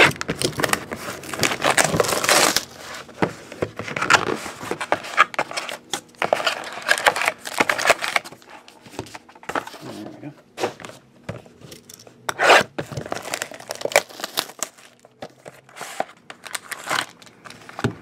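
Foil hockey card pack wrappers being torn open and crinkled, in irregular bursts of tearing and rustling, with cardboard box handling.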